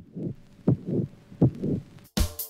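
Heartbeat sound effect: three double beats, each a sharp low thump followed by a softer one, repeating about every three-quarters of a second.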